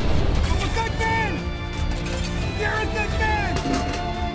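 Deep, steady rumble of a rocket launching, under music, with voices calling out in falling tones.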